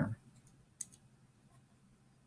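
A single sharp click a little under a second in, with a couple of fainter ticks around it, over faint room tone.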